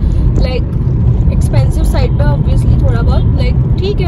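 A woman talking inside a car cabin over the steady low rumble of the car's engine and road noise.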